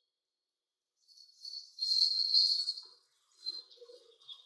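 Tomato and onion masala sizzling and bubbling in a karahi, a high hiss that comes in about a second and a half in and lasts about a second and a half.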